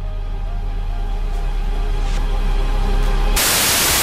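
Logo intro sting: dark music over a deep sustained bass that slowly grows louder, then cut off about three and a half seconds in by a loud burst of static hiss, a glitch sound effect.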